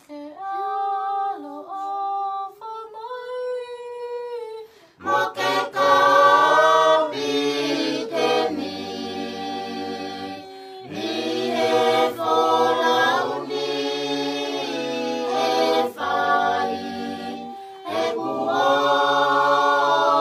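A Tongan hiva 'usu hymn sung a cappella by a small group of men and women. One voice sings alone for the first few seconds, then the whole group comes in together in harmony, pausing briefly between phrases.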